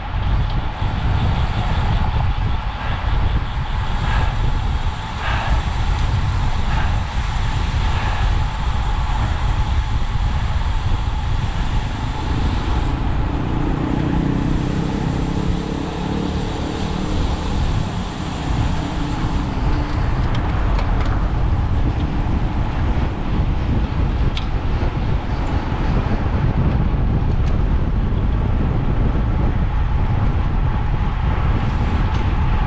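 Steady wind rush on a bicycle-mounted camera's microphone, with tyre and road noise, from riding at about 40 km/h in a road-bike group. It eases a little around the middle as the pace drops through a bend.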